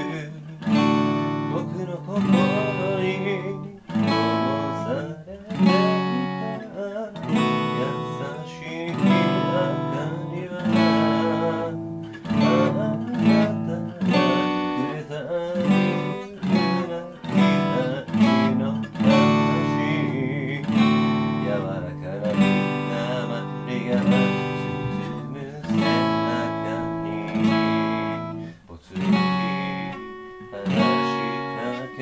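Steel-string acoustic guitar with a capo, played solo: chords strummed and picked by hand, a fresh stroke about every second, each left to ring into the next.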